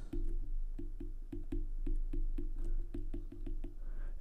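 Stylus tip tapping and scraping on an iPad's glass screen during handwriting: a quick, irregular run of light clicks, several a second.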